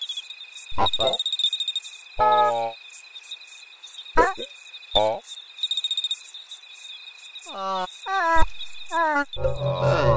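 Soundscape of steady cricket-like chirping and a high whine, broken by short wordless vocal sounds that glide up and down in pitch; sustained low musical tones come in near the end.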